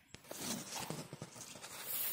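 Footsteps walking along a dirt riverbank path: a run of soft, irregular steps over a faint outdoor hiss.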